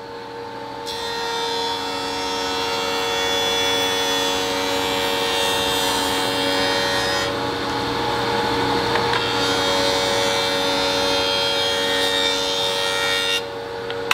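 An 8-inch Delta jointer with a Byrd segmented cutterhead runs with a steady hum while it planes maple boards fed by hand. The cutting noise starts about a second in, eases for about two seconds midway, resumes, and stops just before the end.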